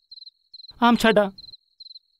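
Cricket chirping at a steady high pitch, nearly four short trilled chirps a second, as night ambience. A voice speaks a single short word in the middle.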